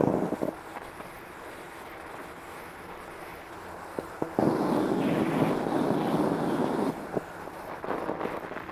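Fat bike tyres rolling through fairly deep snow, with wind rushing over the helmet-level camera microphone. The noise swells about halfway through, stays up for a few seconds and eases off near the end, with a few short clicks along the way.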